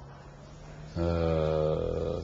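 A man's voice holding a drawn-out hesitation sound, a filled pause on one steady pitch: a quiet low hum at first, then about a second in a louder held vowel lasting about a second before he carries on speaking.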